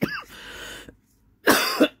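A woman coughing once, a short harsh cough about one and a half seconds in.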